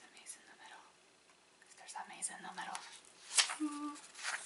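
Soft whispered speech over the rustle of paper pages as a hardcover journal is leafed through and opened, with one sharp snap about three and a half seconds in, then a short hummed sound.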